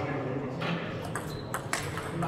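Table tennis ball being served and rallied, struck by the bats and bouncing on the table: three sharp clicks about half a second apart.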